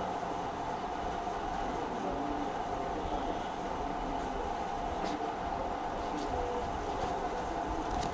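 Steady background noise with a constant mid-pitched hum, unchanging throughout.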